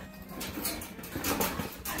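A large dog stepping through a white wire display rack on a tile floor: scattered light clicks and rustles.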